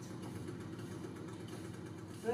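Steady low hum with no clear events, at a fairly quiet level.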